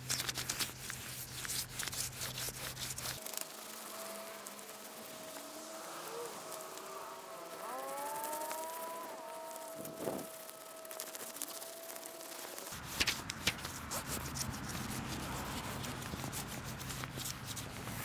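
A crayon rubbed in quick, scratchy strokes over paper taped to a gravestone's carved face. The strokes fall away for several seconds in the middle, where a faint steady tone with a few short rising and falling pitch glides is heard, then the rubbing resumes.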